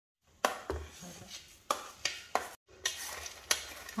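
Metal spoon scraping chopped roasted nuts off a plate into a steel mixing bowl of flour, with a series of irregular sharp clinks of the spoon against the plate and bowl.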